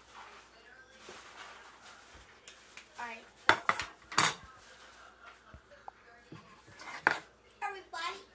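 A few sharp clattering knocks close to the microphone: three in quick succession about halfway through and another near the end, with quiet rustling between.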